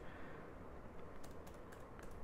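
Faint, scattered computer keyboard keystrokes, a few separate key presses while a line of code is edited.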